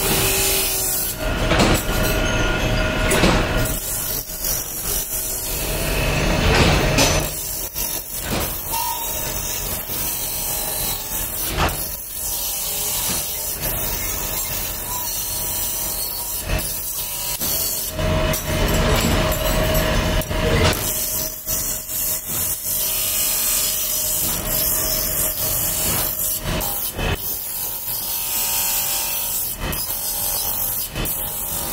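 Bench grinder's abrasive disc grinding steel fork tines held in a jig, a steady hissing grind with a faint motor hum under it. It swells louder in stretches as the fork is pressed harder.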